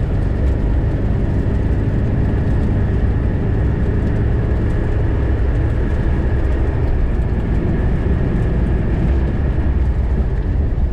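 Car driving on a packed-snow road, heard from inside the cabin: a steady drone of engine and tyre noise with a faint steady high whine.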